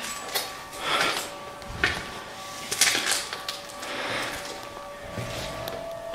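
Irregular knocks and scrapes in a dark, empty building, roughly one a second with the loudest about three seconds in, over a faint steady hum.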